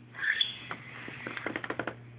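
Handling noise from a phone being moved about: a brief squeak, then a run of small clicks and taps that come faster near the end, over a steady low hum.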